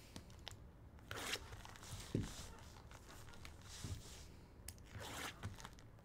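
Plastic shrink-wrap on a sealed trading card box being slit and pulled off, heard as a few faint, short crinkles and scrapes.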